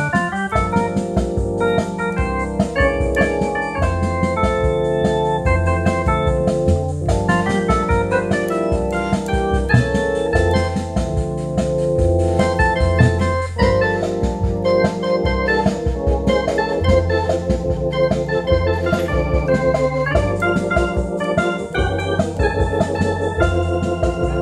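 Hammond Colonnade theater-style console organ played live: sustained chords over a bass line that steps from note to note about once a second.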